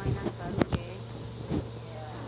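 A steady low mechanical hum, with two sharp knocks from the phone being handled, one just past halfway and one near the end.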